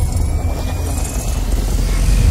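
Deep, steady rumble of a cinematic intro sound effect, with a faint high tone sliding slowly upward.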